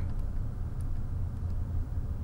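Steady low background hum with no other sound.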